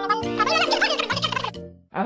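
A high, rapidly warbling cartoon vocal sound effect over children's background music with a steady bass line. It fades out shortly before the end.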